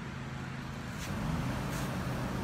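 Steady low hum and background noise, with a faint click about a second in.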